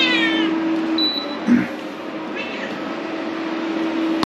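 Two short, high animal calls, each falling in pitch, about two seconds apart, over a steady low hum. A brief high beep sounds about a second in.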